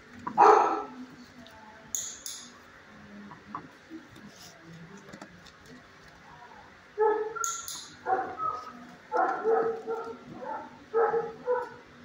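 Dog barking: one loud bark about half a second in, then a run of short barks from about seven seconds in until near the end, with a couple of sharp clicks between.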